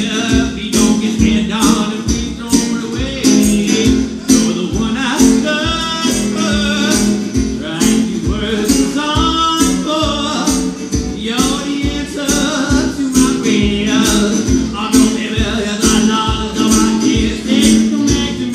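A man singing live over a strummed resonator guitar, played with a fast, steady strumming rhythm that carries through the whole stretch.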